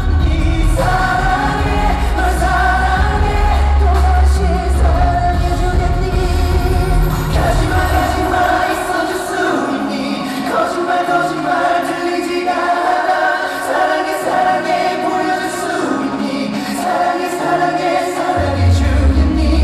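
Male pop vocalists singing a ballad live into handheld microphones over a full backing track. The deep bass drops out about halfway through, leaving the voice over lighter accompaniment.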